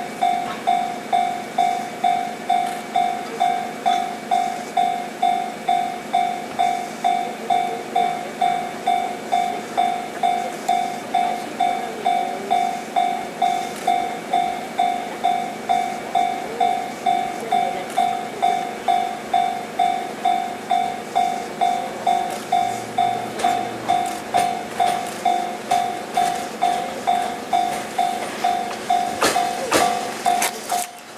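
Japanese level-crossing alarm ringing a single electronic bell tone about twice a second, steady and unbroken. The faint running noise of an approaching train lies beneath, with a few sharp clicks near the end as it draws close.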